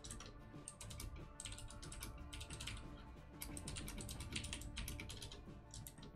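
Typing on a computer keyboard: quick bursts of key clicks with short pauses between them, over faint background music.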